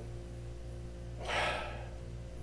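One short sniff through the nose, about a second and a half in, as whiskey is nosed from a tasting glass, over a faint steady hum.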